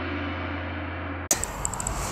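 An added ringing sound effect: a steady, many-toned ringing that fades slightly, then is cut off abruptly about a second and a quarter in. After the cut there is only faint outdoor background noise.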